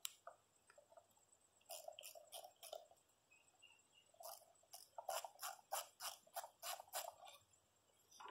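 Faint series of short clicks and squeaks as a screwdriver turns a screw out of a Browning BAR Mark III rifle, in a short group about two seconds in and a quicker run from about four to seven seconds in.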